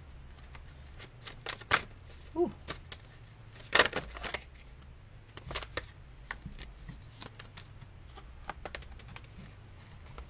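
A deck of tarot cards being shuffled by hand and cards set down, a run of short card clicks and flicks, loudest near two and four seconds in.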